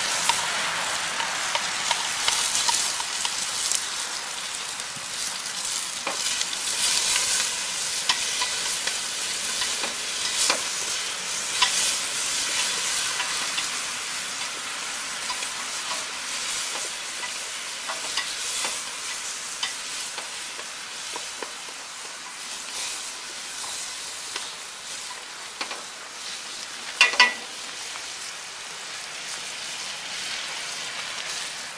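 Tomato slices, shallots and green peppercorns sizzling in hot oil in a large aluminium pot while chopsticks stir them. The sizzle is strongest at first and slowly dies down, with small clicks throughout and two sharp taps near the end.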